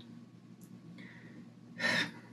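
Quiet room tone, then a short, sharp intake of breath near the end, as a woman breathes in before speaking.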